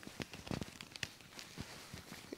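A few faint, scattered clicks and light rustling as a brooch pin is worked through a supple leather jacket and its clasp is fastened.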